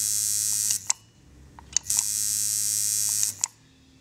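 Coil tattoo machine buzzing on an Atom power supply, run in two short stretches with a pause of about a second between them, and a couple of small clicks in the gap.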